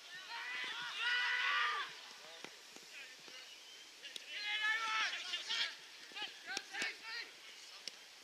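Distant shouting from players on a football field: two long, high-pitched calls, about half a second in and again about four seconds in. A few short, sharp knocks follow near the end.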